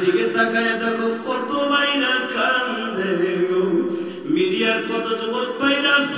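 A man's voice chanting in a drawn-out melodic tone, amplified through microphones, with long held notes that rise and fall and a short break about four seconds in.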